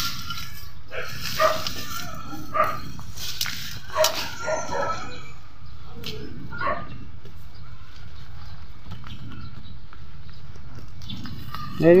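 A dog barks several short times in the first seven seconds, over a steady low rumble.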